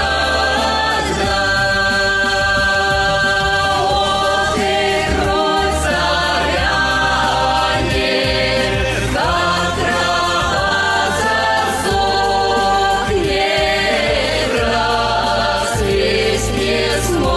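Background music: a choir singing in long held notes over a musical backing.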